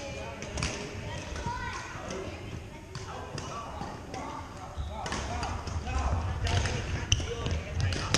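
Badminton gym ambience: scattered voices and sneaker squeaks across the hall, with sharp racket-on-shuttlecock hits and low thuds of footsteps that grow busier after about five seconds, ending in a loud crisp hit.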